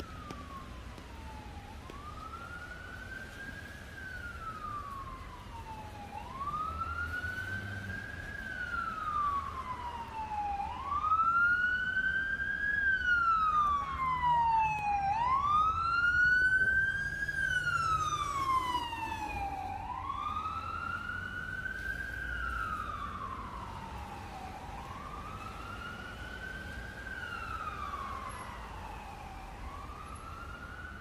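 Emergency vehicle siren on a slow wail, rising and falling about every four and a half seconds, growing louder as it comes closer, loudest from about a third of the way in to just past the middle, then fading a little.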